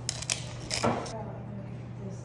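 Plating noises: a few quick clicks, then a louder short grating burst about a second in, over a low steady hum.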